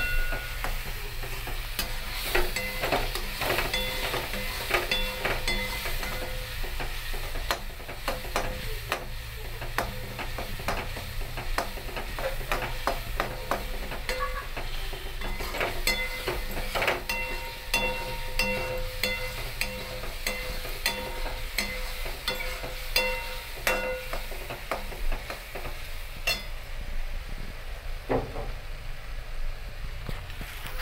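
A tomato masala sizzling in oil in an aluminium kadai, stirred and scraped with a metal spoon. The spoon clicks against the pan many times, and some strikes set the pan ringing briefly.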